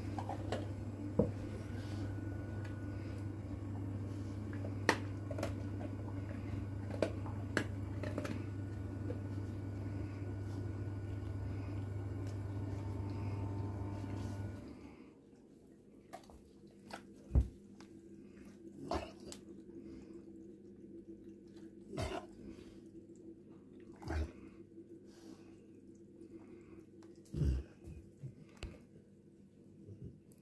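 A cat eating from a metal bowl: scattered small clicks and crunches. They sit over a steady low hum that cuts off abruptly about halfway through.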